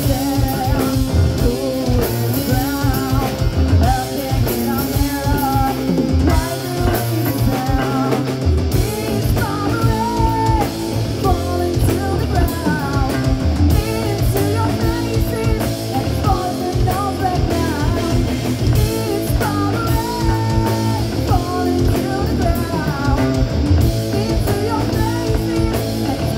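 Live rock band playing a song: a woman sings lead over electric guitars, bass guitar and a drum kit.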